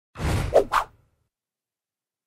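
Whoosh sound effect for a channel logo animation: a rushing sweep under a second long that ends in two quick swishes.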